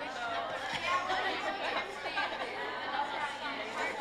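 Indistinct chatter of many voices talking over one another, with no single voice standing out.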